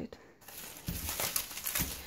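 Plastic bubble-wrap packaging crinkling and rustling as a hand rummages in a cardboard shipping box. It starts about half a second in.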